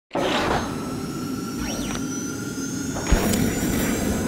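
Video intro sound-effect sting: a steady wash of noise with a high steady whine. It has a pitch sweep up and back down just under two seconds in and a sharp hit about three seconds in, the loudest moment.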